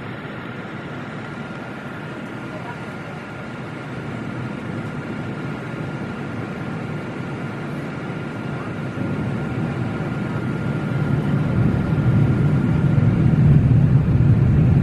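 Jet airliner cabin noise heard from a window seat in flight: a steady rush of airflow and engine drone with a thin steady whine. The low rumble grows louder over the second half.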